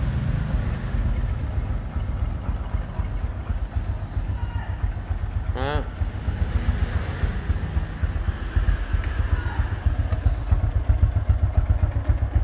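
Small motorcycle engine idling with a steady, rapid low pulse that grows a little louder near the end.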